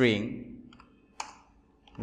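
A few computer keyboard keystrokes, one sharper click about a second in.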